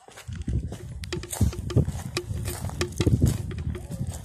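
Footsteps crunching over dry leaf litter and dirt: many irregular crackles over a low rumble on the microphone.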